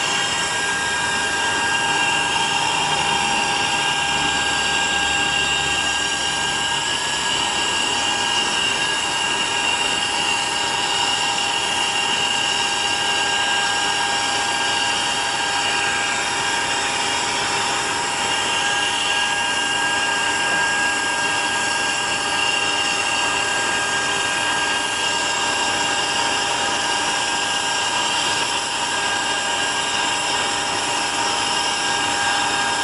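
Steady, high-pitched turbine whine from a large military jet transport aircraft on the ground.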